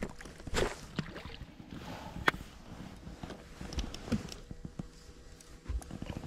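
Scattered light knocks and clicks of a small trout being lifted by hand into a boat, with one sharp click about two seconds in.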